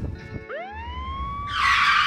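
A siren winding up, its wail rising in pitch and then holding steady. About one and a half seconds in, a loud burst of noise joins it.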